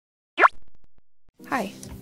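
A single short, quick sound effect about half a second in, gliding steeply down in pitch like a 'bloop'. About a second and a half in, a woman's voice starts speaking over soft background music with sustained low notes.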